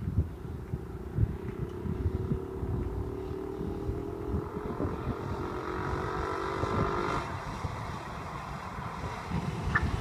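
Go-kart engine running at rising revs, its pitch climbing steadily for about six seconds before it fades away about seven seconds in. Wind buffets the microphone throughout.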